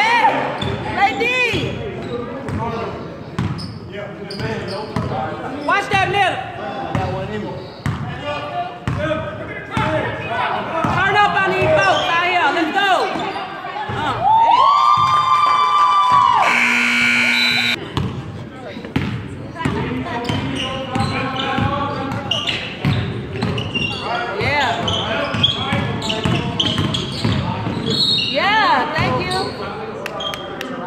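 Basketball game sounds on a hardwood gym court: the ball bouncing, sneakers squeaking, and voices, echoing in the large hall. Just past the halfway point a long squeal is followed by a loud shrill blast lasting about a second.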